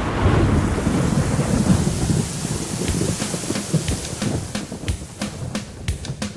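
Crowd applause, dense at first and thinning to scattered single claps as it dies away.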